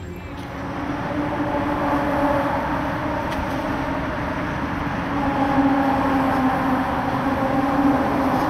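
Steady vehicle noise: a rushing rumble with a drawn-out hum, growing a little louder after the first second.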